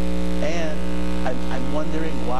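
Steady electrical mains hum in the meeting hall's microphone and sound system, a constant low buzz with several overtones. A faint voice comes through briefly in the middle.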